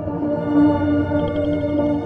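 Ambient background music of slow, held tones.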